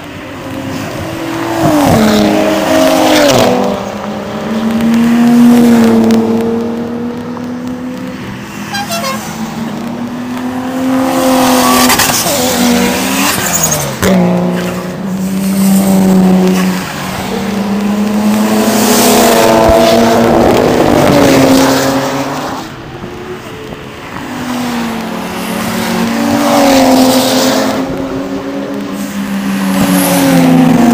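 A stream of Nissan Skylines driving past at speed on a race-track straight, one after another. Each engine swells as the car nears and drops in pitch as it goes by.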